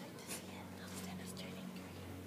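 Hushed whispering voices, short breathy hisses coming and going, over a steady low hum.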